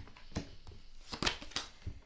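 Tarot cards being drawn from a hand-held deck and laid down on a tabletop: a handful of short, light clicks and taps of card on card and on the table, most of them in the second half.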